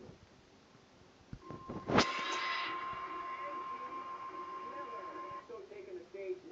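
A television results-show musical sting heard through a laptop speaker: a sudden loud hit about two seconds in, then a held tone that rings on for about three seconds before cutting off.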